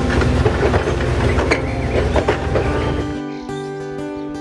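A passenger railroad coach rolling past at close range: a loud steady rumble with scattered clicks from the wheels on the rails. About three seconds in it gives way abruptly to acoustic guitar music.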